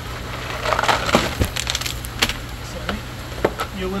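Crackling, scraping and irregular sharp clicks of a yellow plastic tray being handled and set down on gravel beneath a bead filter's drain fitting, over a steady low hum.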